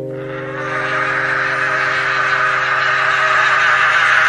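Blues-rock band recording: a held electric guitar chord rings out steadily while a hissing wash swells up under it and stays.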